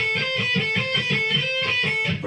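Electric guitar playing a rhythmic lick in A minor pentatonic, returning again and again to the added ninth, the B note.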